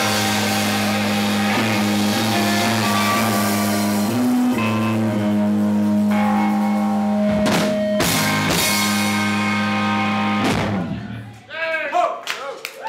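Live rock band, with electric guitars, bass guitar and a drum kit, playing the closing bars of a song: sustained chords and a few loud drum hits, with the music stopping about eleven seconds in.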